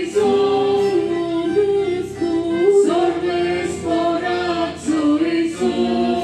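Choir singing a slow hymn, with female voices prominent, moving in long held notes that slide from one to the next.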